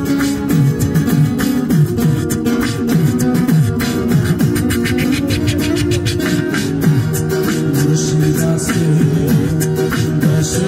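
Live instrumental passage: an acoustic guitar is played over a steady percussive beat.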